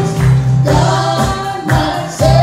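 Live gospel worship song: a man singing into a microphone while strumming an acoustic guitar, with the congregation singing along over a steady beat.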